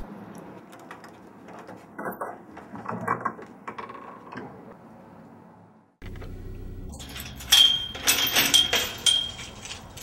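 A few soft knocks and rustles that fade out, then, after a cut, a low steady hum with a quick run of metallic clinking and jingling in the last few seconds.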